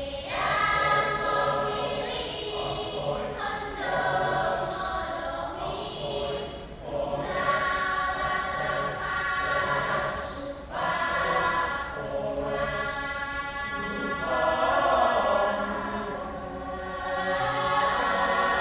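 A choir singing a folk-song arrangement in several parts, with short sharp accents about every two to three seconds.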